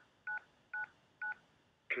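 Four DTMF keypad tones, all the digit 9, about two a second, each a short beep of two steady notes: a four-digit code, 9999, being keyed into a SIP server call on an iPhone. A recorded voice prompt begins at the very end.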